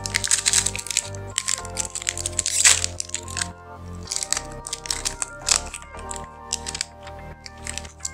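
Foil wrapper of a Pokémon TCG Battle Styles booster pack crinkling and crackling as it is handled and opened and the cards are drawn out, the crackle densest in the first three seconds, over background music.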